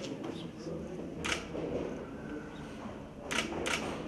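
Camera shutter clicks, three in all: one about a second in and a quick pair near the end, over a low murmur of voices.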